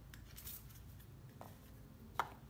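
Faint handling of a deck of cards: a few soft scrapes and light clicks as the cards are moved on the table, over a low room hum.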